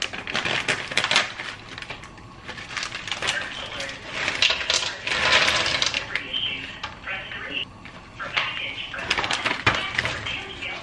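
A plastic bag of rice cakes rustling and crinkling as it is opened and emptied into a frying pan, with many small clicks and knocks.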